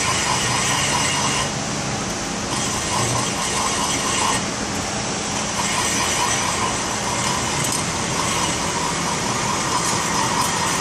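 Metal lathe turning a 3-inch DOM mild steel driveshaft tube while the cutting tool faces and deburrs its end to square it up: a steady machine noise with the scrape of the cut.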